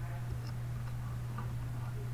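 Steady low hum with a few faint, irregular soft ticks over quiet room tone.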